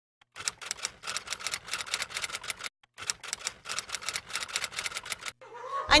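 A rapid, irregular series of sharp clicks or taps, several a second, in two runs of about two seconds each, broken by a short pause.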